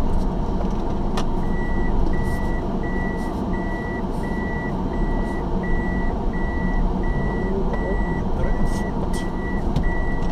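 A car's reversing warning beeper sounds inside the cabin, a steady high beep about twice a second starting about a second and a half in. Low engine and vehicle noise runs underneath.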